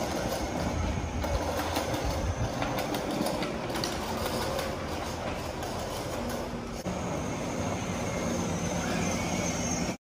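Small plastic wheels of a child's bicycle with training wheels rolling and rattling over a concrete car-park floor, a steady rumble.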